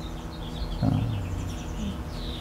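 Small birds chirping in quick, repeated high notes, with a person's low hummed "mm" starting just under a second in.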